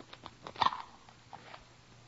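A few small clicks and handling rustles of a metal cigarette case being handled and opened, with one louder snap about half a second in. It is an old radio-drama sound effect.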